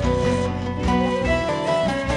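Instrumental Kurdish folk music: a wooden end-blown flute plays a held, gently wavering melody over a bağlama (long-necked saz) plucking a rapid accompaniment.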